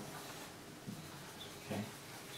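Faint squeak and scratch of a dry-erase marker drawing a wavy shading line on a whiteboard.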